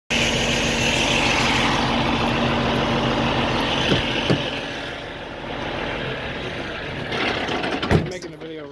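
A heavy truck's diesel engine idling steadily, with two sharp clicks about four seconds in. It turns quieter after the clicks and louder again near the end.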